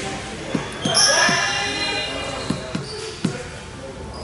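A basketball bouncing on a hardwood court: about seven dull bounces at uneven intervals, echoing in the large hall, with voices around it.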